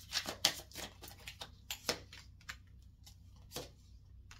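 Tarot cards being shuffled and handled by hand: a quick run of crisp card clicks for about two seconds, then a few scattered clicks as cards are set down on the table.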